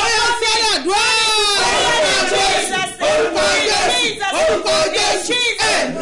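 A woman shouting and crying out in prayer, in a loud, high, strained voice, with only a few short breaks for breath.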